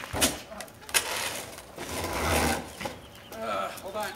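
Large plastic wheeled trash bin being handled and rolled over a concrete dock: a sharp knock about a second in, then a rumbling, scraping noise for about a second and a half.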